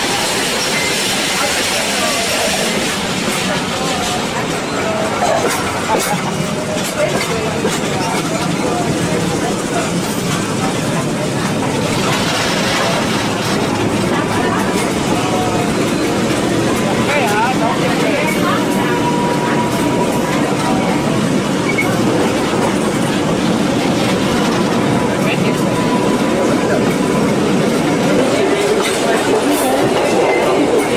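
Kuranda Scenic Railway train running, a steady loud rumble and rattle of carriage wheels on the rails heard from aboard a carriage.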